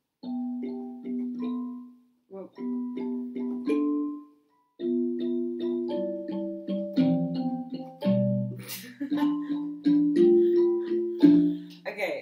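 Electronic keyboard playing chords, first in two short runs of repeated chords that each stop briefly, then a longer passage with changing chords and a low bass note.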